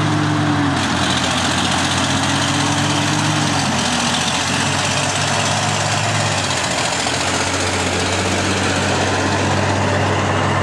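Heavy diesel engine of a MEGA MES34 elevating scraper running under load as it drives toward the camera, heard over a steady low engine drone. The drone's pitch dips twice in the first four seconds, then holds steady.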